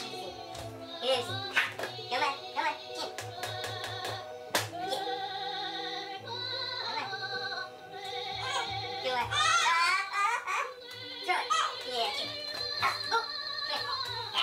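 Music with a singing voice, held pitched notes throughout, with scattered clicks.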